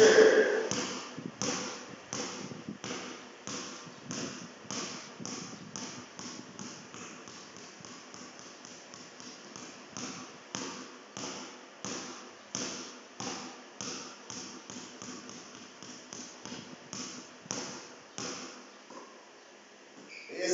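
A basketball dribbled low and short on a concrete floor: a steady run of bounces, two or three a second, stopping about a second before the end.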